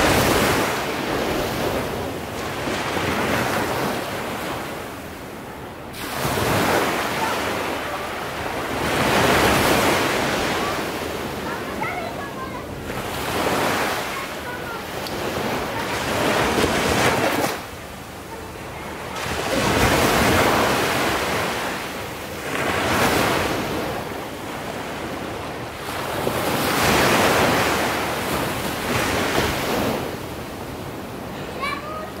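Ocean waves breaking in a steady surf, each swell of noise building and falling away about every three to four seconds.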